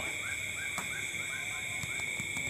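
Night-time animal chorus: a steady high-pitched ringing drone with a quick run of short repeated chirps, about six a second.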